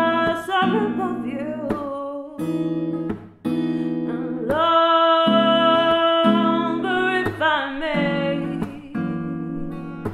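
A woman singing a slow song to her own strummed acoustic guitar. She holds one long note from about four and a half seconds in to about seven.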